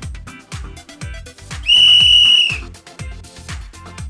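Upbeat dance music with a steady kick-drum beat, about two beats a second. Near the middle a single loud, steady, high-pitched whistle blast cuts in and lasts about a second.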